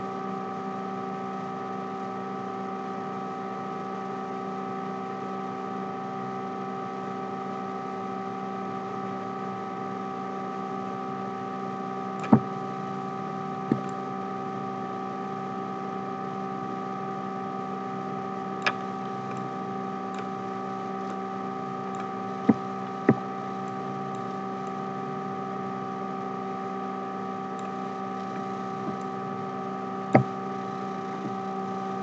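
Steady electrical hum made of several level tones, with a handful of short sharp clicks in the middle stretch, two of them close together.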